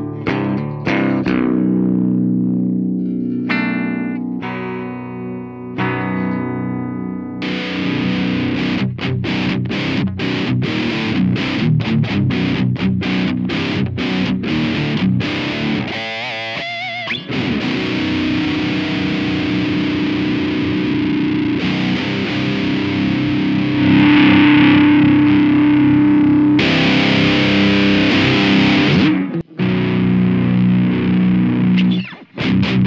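Electric guitar played through the Leaded Answer distortion pedal into a Marshall JMP amp profile, a Marshall MF400 cabinet miked with an SM57. It opens with ringing notes and chords, then moves to heavy distorted riffing with many short stopped chords. After a brief pause about halfway, when the pedal is switched on, the riffing carries on sustained and thick.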